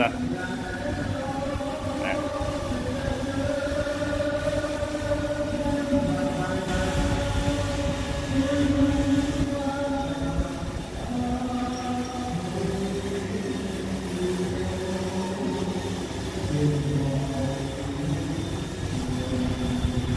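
Loud karaoke singing from next door: long held notes that step to a new pitch every second or two. Underneath it, an iRobot Roomba e5 robot vacuum runs its spot-clean circle with a steady whir.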